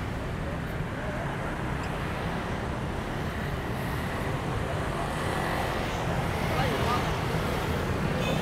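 Steady hum of city traffic mixed with indistinct chatter from a crowd of people.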